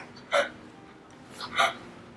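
A woman sobbing: two short, catching sobs, about a third of a second in and again about a second and a half in.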